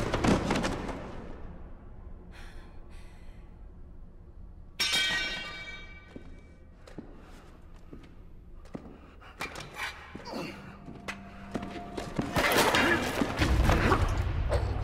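Film fight sound effects: a crash dies away, then a quiet stretch of scattered thuds and knocks. A bright ringing note sounds about five seconds in and fades, and loud blows and struggle begin near the end.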